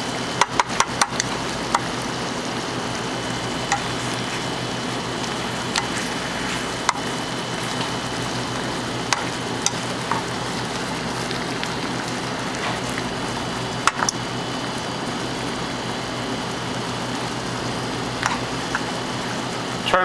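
Chicken chasseur sauce bubbling steadily in a frying pan as it reduces with butter stirred in, with sharp clicks of metal tongs against the pan as the chicken pieces are turned: a quick cluster about a second in, then single clicks every few seconds.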